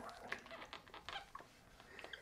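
Faint scraping and rustling of a steam iron sliding over a cotton sleeve on an ironing board, with a few small clicks, as the hem is pressed to bond fusible hem tape.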